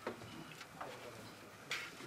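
A few faint, scattered clicks and light knocks in a quiet room, the sharpest and loudest about 1.7 seconds in.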